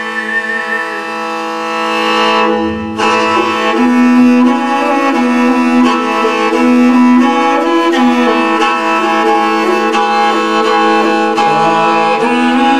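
Mongolian khoomei throat singing: a sustained drone rich in overtones, with a melody moving above it. A high whistling overtone fades out about a second in.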